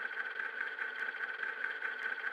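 A steady mechanical hum with a high, even whine held at one pitch.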